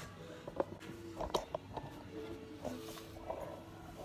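Faint background music with held notes. A few light clicks and knocks from handling sound over it, the clearest about a second and a half in.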